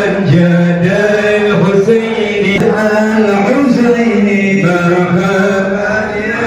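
A man chanting an Arabic prayer through a microphone, in a melodic voice with long held notes.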